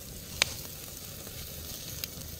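Open wood fire burning under marinated chicken on a wire grill: a steady sizzling hiss with one sharp crackling pop about half a second in.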